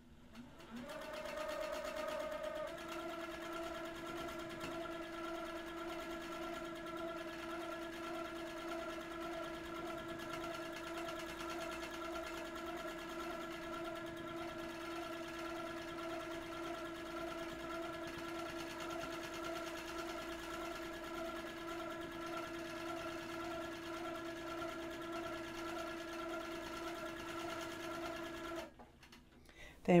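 Handi Quilter Capri sewing machine running in manual mode during free-motion quilting. A steady stitching hum starts about a second in, settles into an even pitch after a couple of seconds, and stops shortly before the end.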